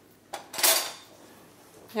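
Cutlery clattering on a table: a light click, then a short, sharper clatter just past half a second in.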